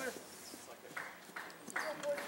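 Faint, distant voices of players calling out on an outdoor soccer field, with two short shouts about one second in and near the end.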